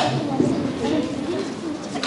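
Indistinct, overlapping chatter of children's voices, with a brief knock right at the start.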